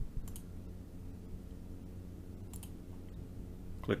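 Two computer mouse clicks about two seconds apart, over a faint steady low hum.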